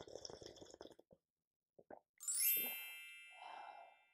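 A sip of tea slurped from a mug at the start. About two seconds in, a bright cascade of chime notes steps downward and rings out, fading over about a second and a half, with a soft whoosh near the end.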